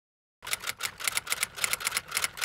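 Typewriter-style key clacking, about six clacks a second, starting about half a second in after a moment of silence: a typing sound effect.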